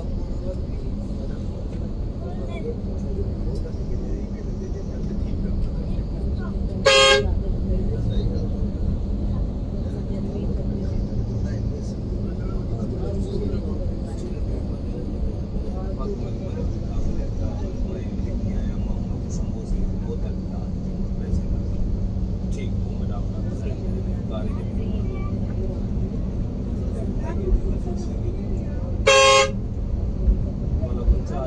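Steady engine and road rumble heard from inside a Yutong Nova coach in city traffic. A loud horn sounds twice: one short blast about seven seconds in and another just before the end.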